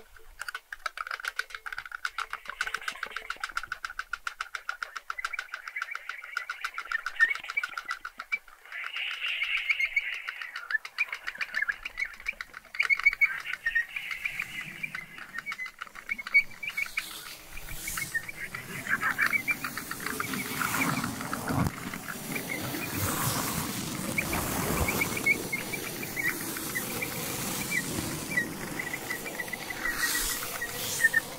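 Flute and saxophone improvising in a non-melodic way: a fast run of clicking with short bird-like chirps high up. A little past halfway a louder, rougher noise with a low rumble joins in.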